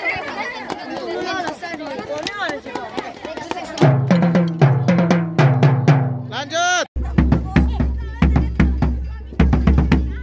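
Children's voices chattering, then about four seconds in a set of marching tenor drums struck with mallets in a quick run of pitched strokes. After a sudden cut, a marching bass drum is struck in a run of deep beats.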